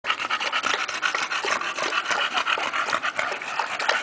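An English bulldog lapping water from a plastic tub in a quick, steady run of wet laps.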